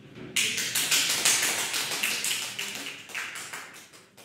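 A small audience clapping, starting shortly after the start, then thinning out and dying away near the end.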